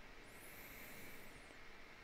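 Near silence: faint room tone with a low hiss.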